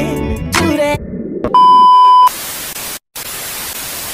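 A song with singing cuts off about a second in, followed by a loud, steady beep lasting under a second and then television-style static hiss with a brief dropout. This is a TV-glitch transition sound effect.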